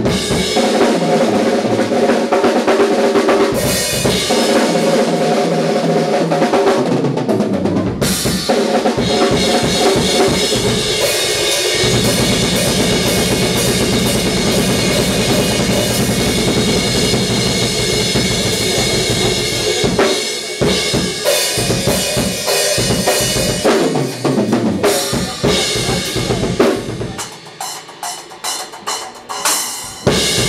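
Live rock band playing loud and amplified, with the drum kit's kick, snare and cymbals prominent over electric guitar and bass. Near the end the full band drops back and the music thins to separate drum hits.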